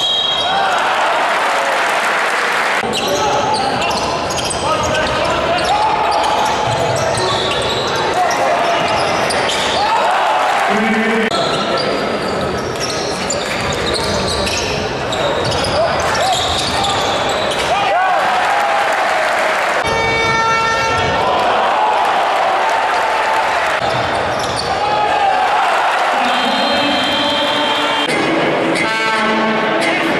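Basketball game in an arena: ball bouncing and crowd voices chanting and shouting throughout. A short high whistle comes at the start and again near the end, and a horn-like buzzer sounds about twenty seconds in.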